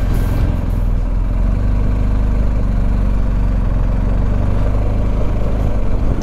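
Motorcycle engine running steadily at low revs while the bike rolls slowly through town traffic, a constant low hum with no rise or fall in pitch.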